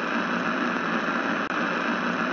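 Steady radio static hiss as the radio is tuned between stations.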